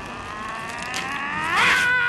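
A long, high, wavering cry that rises in pitch and grows louder about a second and a half in.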